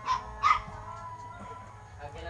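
A dog barking: two short barks in the first half second, then quieter.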